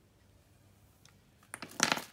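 Near silence, then about a second and a half in a quick burst of clicks and rustling as items are handled and set down in a hard plastic carrying case with foam inserts.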